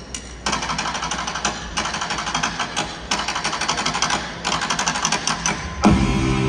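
Drum kit hi-hat played in a fast, even ticking pattern as the intro of a rock song, with the full band coming in loudly just before the end.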